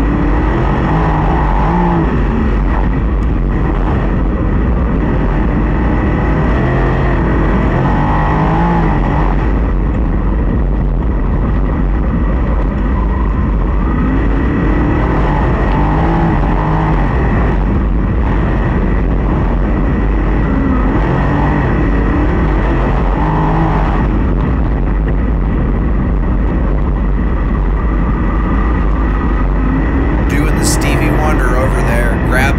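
USAC sprint car's V8 heard onboard at racing speed, its revs rising and falling in a repeating cycle every six or seven seconds as it goes around the dirt oval, over a steady heavy rumble of wind on the microphone.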